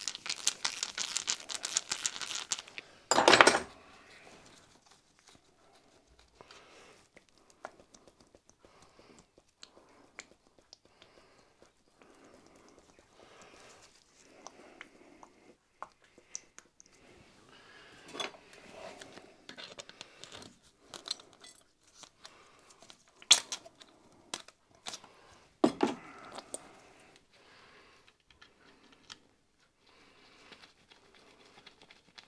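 Small metal clicks, scrapes and knocks from hand work on a small steam engine's crankcase and oil pump. A rapid rattling comes first, then one loud knock about three seconds in, followed by scattered quieter taps and a couple of sharp clicks near the end.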